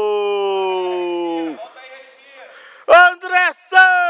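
A man's long, drawn-out "gooool" cry in the manner of a football radio commentator, one held note slowly falling in pitch, breaking off about one and a half seconds in. Near the end come a few short, loud shouts.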